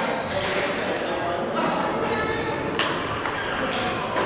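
Celluloid/plastic table tennis balls clicking sharply off rubber-faced bats and the table in a brief rally, over a steady murmur of voices.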